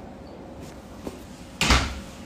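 A voice cuts off abruptly as a live-stream connection drops, leaving a steady low hiss. About a second and a half in comes one short, loud thump from the phone being handled.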